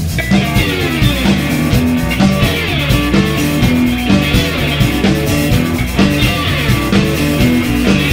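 Live blues band playing an instrumental passage: electric guitar, electric bass and drum kit with a trumpet over the top, keeping a steady driving groove.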